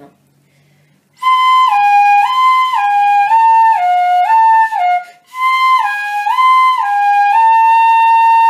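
Pífano (transverse fife in C) playing a slow left-hand finger exercise: two notes alternated back and forth, the pair stepping down, in two phrases with a short break near the middle. The second phrase ends on a held note.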